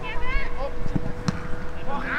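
Football players' shouts on the pitch, with a brief call early on and two dull knocks about a second in, over a faint steady tone and outdoor background noise.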